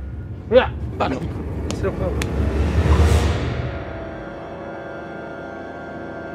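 Eerie film-score music with held tones. A whoosh and low rumble swell up and crest about three seconds in, then fade. There are brief vocal exclamations near the start.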